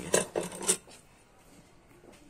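Steel parts of a truck wheel hub clinking: a toothed lock washer and hub nut knocked against the hub as they are lifted out, three or four light metallic clinks in the first second.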